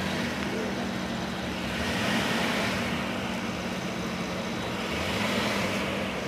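Rolls-Royce convertible's engine idling with a steady low hum; a broader hiss swells briefly about two seconds in.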